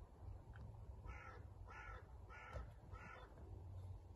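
A crow cawing four times, evenly spaced about two-thirds of a second apart, faint, over a low steady rumble.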